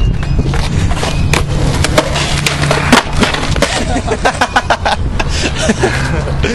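Skateboard wheels rolling on asphalt with a steady rumble, broken by sharp clacks and knocks as the board strikes a concrete ledge and the ground. The loudest hits come around two and three seconds in, and a quick cluster of knocks follows between about four and five seconds.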